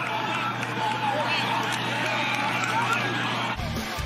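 Indistinct shouting and chatter from football players celebrating on the field, over a steady low hum. The sound changes abruptly about three and a half seconds in.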